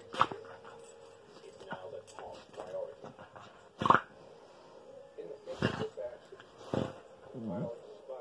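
Two small dogs play-fighting and mouthing at each other, with a few short, sharp vocal sounds, the loudest about four seconds in, and a falling, pitched dog sound near the end.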